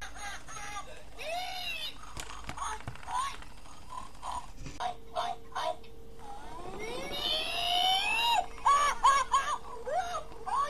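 Singing plush pig toy making high, squeaky electronic voice sounds: quick chirps that bend up and down, with a long rising sweep about seven seconds in. A faint steady hum sits under it from about halfway through.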